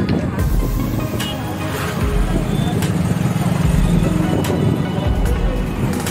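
Background music and voices over the running and road noise of an open-sided passenger vehicle moving through street traffic.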